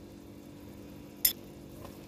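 Fig jam bubbling softly in a steel pot while a metal spoon stirs in citric acid, with one sharp clink of the spoon against the pot about a second in.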